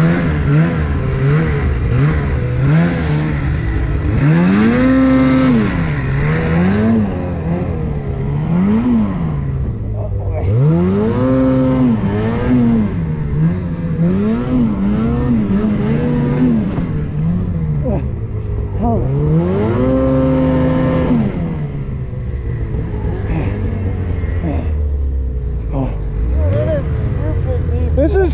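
Ski-Doo Summit 850 two-stroke snowmobile engine revving up and down again and again as the sled is driven through deep powder, with three longer holds at high revs, around five, twelve and twenty seconds in.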